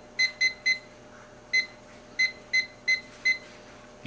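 Handheld digital kitchen timer beeping at each button press as a fifteen-minute countdown is keyed in: eight short, high-pitched beeps, three in quick succession in the first second, then five more at uneven intervals.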